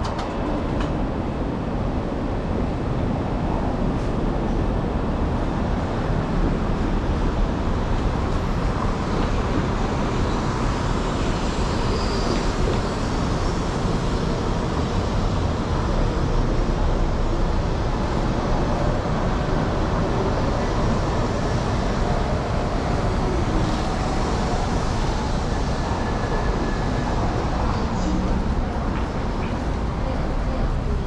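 Steady road traffic noise from cars passing on the station's access road, a continuous low rumble with no breaks.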